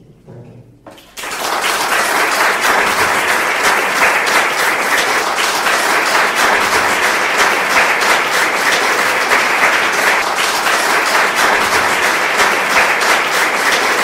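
Audience applauding, starting suddenly about a second in and then holding steady and loud.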